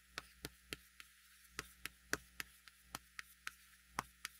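Chalk tapping and scraping on a blackboard as characters are written: a dozen short, sharp ticks at about three a second, with a brief pause near one second in. A faint steady mains hum sits underneath.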